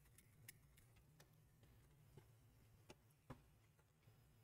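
Near silence with four faint clicks, the loudest a little after three seconds in: small resin 3D-printed scissors being worked on paper.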